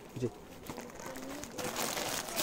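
Clear plastic wrapping on packed suits crinkling as they are handled, rising near the end, over faint voices in the background.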